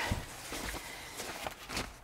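Quiet rustling of a fabric window cover being handled and unfolded, with a few faint soft knocks.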